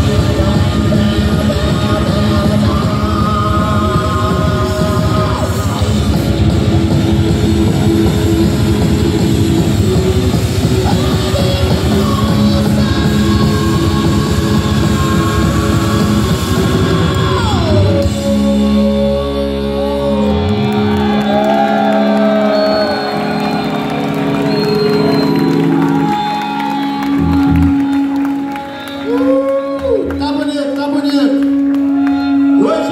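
Heavy metal band playing live with drums, electric guitars and singing. About two-thirds of the way through, the drums stop, leaving held chords with a wavering melody line over them.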